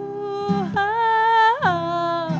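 A voice sings long held wordless "ooh" notes, three in all, with a quick upward slide into the last one. Acoustic guitar chords are strummed beneath them.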